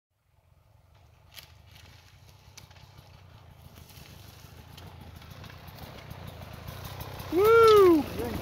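Dirt bike engine coming downhill toward the listener, its low running note growing steadily louder. Near the end a loud rev rises and falls in pitch as the bike passes close by.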